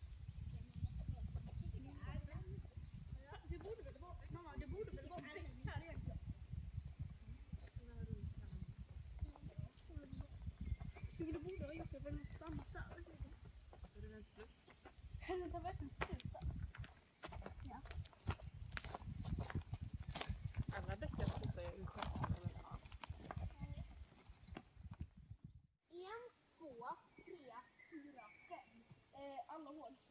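Low wind noise on the microphone, with indistinct voices of adults and children talking. Footsteps crunch on dry leaves and twigs as the walkers pass close by in the middle. After a sudden cut near the end, the low noise stops and only quieter voices remain.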